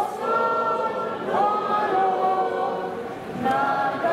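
A large crowd of marchers singing together in unison, many voices holding long notes and sliding between them.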